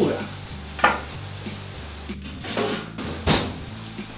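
Hot oven-roasted beef ribs sizzling as they are lifted out with metal tongs and set down on a wooden board with a sharp knock about a second in. Near the end comes the loudest knock, as the oven door is shut. Background music plays under it all.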